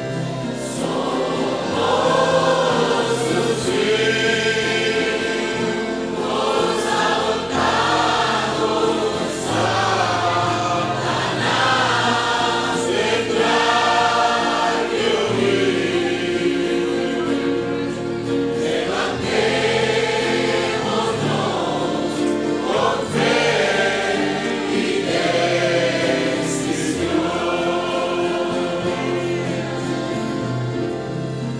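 Congregation singing a worship hymn together in phrases, over instrumental accompaniment holding steady low notes.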